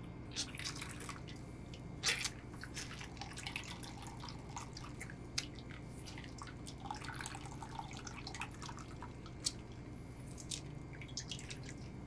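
Soy milk dripping and splashing from a squeezed cloth bag of cooked soybean mash into a stainless steel bowl of milk, as the milk is pressed out of the okara pulp for tofu. The drips come irregularly, with a few louder splashes among them.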